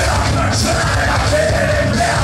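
Live punk rock band playing loud and steady, with a singer yelling the vocals into a microphone over bass guitar.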